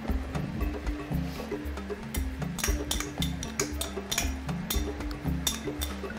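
Background music with a repeating bass line and pitched notes, with short clicking sounds scattered through it.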